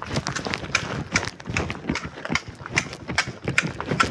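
Footsteps on paved ground at a walking pace, a few sharp steps a second.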